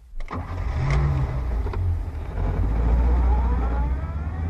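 A car sound effect: a sharp knock, then an engine running and pulling away, rising in pitch as it accelerates over the last couple of seconds.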